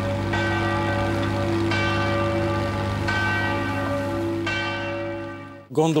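Church bell tolling slowly: four strokes about a second and a half apart, each ringing on over a steady low hum. The ringing fades out and stops just before the end.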